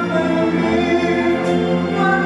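Live orchestral ballad: a male singer with a string-led symphony orchestra, the notes held long and smooth.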